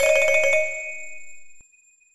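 Closing hit of a TV segment's musical sting: a single bright, bell-like chime struck right at the start and ringing out, fading away within about a second and a half.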